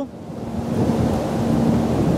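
Wind rushing across the microphone of a camera mounted on a moving bicycle: a steady, low rushing noise. It comes up quickly just after the start.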